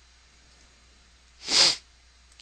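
A man's single short, sharp sneeze about a second and a half in, breaking otherwise quiet room tone.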